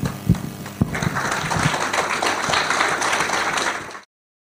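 Two sharp knocks, then an audience applauding, a dense steady clapping that starts about a second in.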